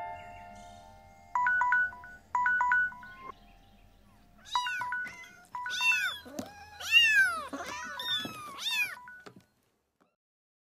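Smartphone alarm ringing in short bursts of two-note electronic beeps, twice, then a litter of kittens meowing over the continuing beeps. It all cuts off abruptly near the end.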